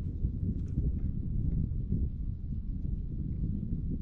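Low, uneven rumble of wind on the microphone and small waves slapping against the hull of a bass boat.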